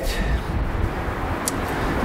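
Steady low rumble and hiss of outdoor background noise, with a small click about one and a half seconds in.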